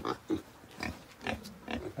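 Young pigs grunting in a pen: a few short, quiet grunts spaced through the moment.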